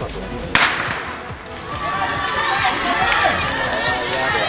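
A starting pistol fires a single sharp shot about half a second in, starting a race. Spectators' voices then rise and carry on through the rest.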